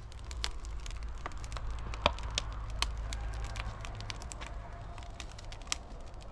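Wood fire burning in a clay oven, crackling with many sharp, irregular pops over a steady low rumble.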